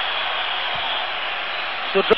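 Steady din of a large basketball arena crowd.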